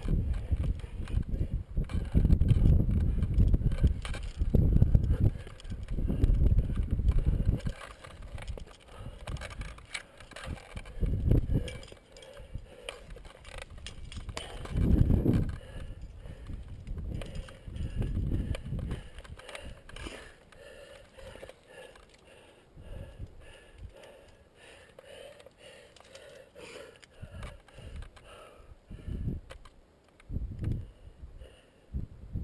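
Gusty wind buffeting a helmet-mounted camera's microphone in irregular low rumbles, heaviest in the first eight seconds and then in shorter gusts, with light clinking of carabiners and other climbing gear as the climber moves.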